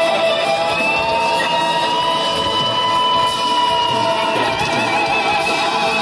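Live rock band playing an instrumental passage led by an electric guitar solo: one long note bent upward and held for about three seconds, then quick wavering notes near the end.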